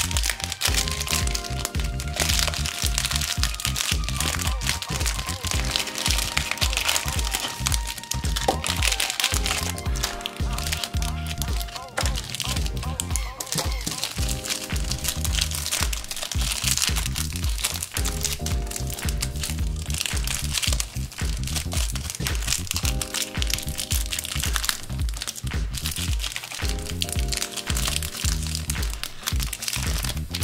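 Plastic and foil candy wrappers crinkling and crackling as small dark chocolate bars are unwrapped by hand, over background music with a repeating pattern.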